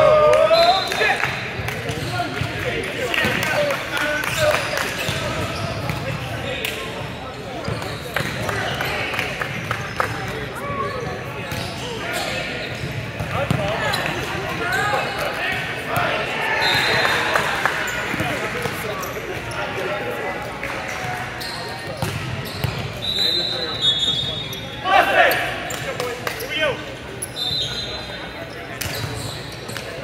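Indistinct chatter of players and spectators echoing in a large gym, with occasional thuds of a volleyball bouncing on the court floor and a few brief high squeaks.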